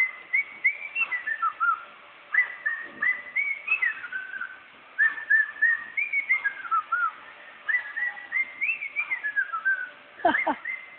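Someone whistling a tune: one clear line of short, sliding notes in phrases, with brief pauses between them.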